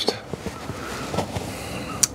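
Faint clicks and light scraping of hand work on the wiring of an RV breaker panel, with one sharp click near the end.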